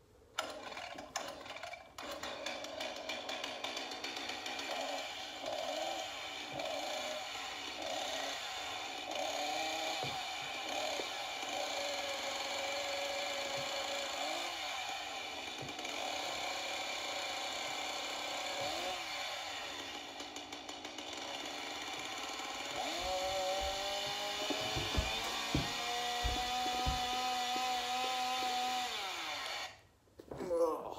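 Chainsaw sound effect played back: the engine runs steadily with a wavering pitch, revs up a little past two-thirds of the way through, and cuts off suddenly at the end. A few low thumps come near the end.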